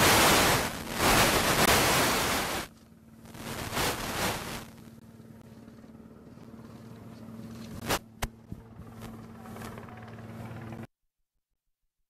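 A loud rushing noise for the first couple of seconds, then a steady low engine hum from the idling motorcade and helicopter on the apron, with two sharp knocks about eight seconds in. The sound cuts off abruptly near the end.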